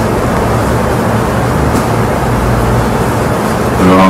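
Steady low rumble and hiss of room background noise, with a faint hum, and no distinct events.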